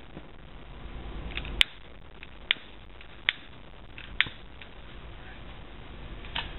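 Steady low background hum with a handful of short, sharp clicks or taps spread through the first four seconds, some under a second apart.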